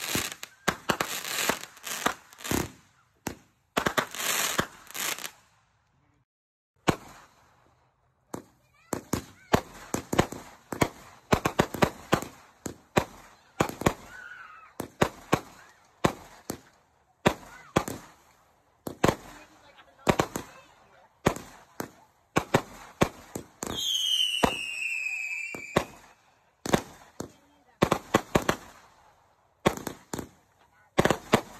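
Fireworks going off: a run of sharp bangs and crackles at irregular intervals, with a short lull about six seconds in. Roughly three quarters of the way through comes a whistle lasting about two seconds that falls in pitch.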